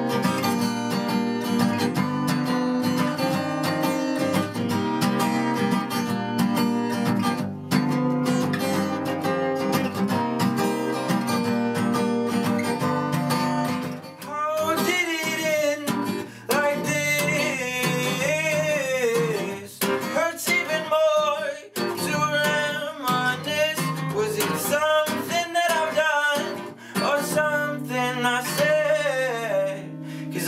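Acoustic guitar strummed steadily. About fourteen seconds in, a man's voice joins, singing over the guitar until near the end.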